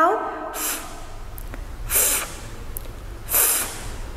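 A woman making the letter sound of F three times: short, breathy 'fff' hisses pushed between her upper teeth and lower lip, about a second and a half apart, in a phonics drill.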